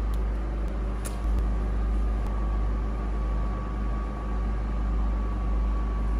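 A steady low mechanical hum and rumble with a thin, constant high whine over it, and a few faint clicks about a second in.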